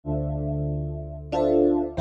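Song intro: sustained electric-piano chords over a steady low bass, with a new chord struck about a second and a half in.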